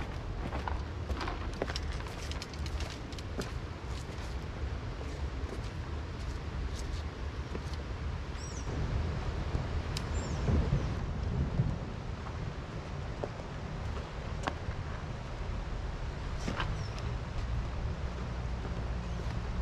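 Steady low rumble of wind on the microphone over the rush of a fast-flowing rocky river, with scattered light knocks and two short high chirps near the middle.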